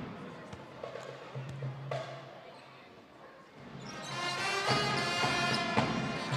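Quiet arena sound with a few sharp bounces of a basketball on the court, then music with many sustained pitched notes comes in about three and a half seconds in and grows louder.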